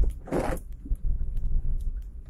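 Car interior on a rough dirt track: a steady low road rumble with small scattered knocks and rattles, and one brief swishing scrape about a third of a second in.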